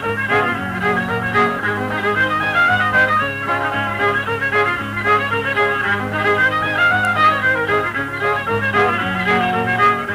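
Old-time fiddle tune played on fiddle with guitar accompaniment: the fiddle carries a busy melody over steady bass notes and chords from the guitar. It is heard through a 1957 home tape recording.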